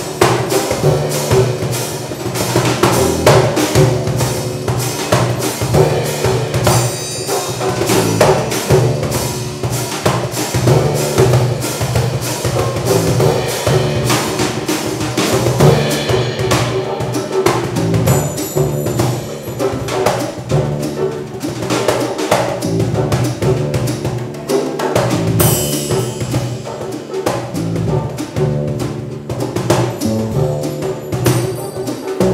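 Instrumental band passage led by a drum kit and hand percussion: fast, dense strikes on drums, cymbals and small percussion over sustained low notes, with no vocals.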